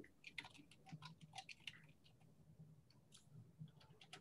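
Near silence broken by faint, scattered small clicks, most of them in the first two seconds and a few more past the three-second mark.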